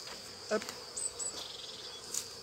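Honeybees buzzing at an open hive, against a steady high-pitched insect chirring that turns into a rapid pulsed trill in the second half.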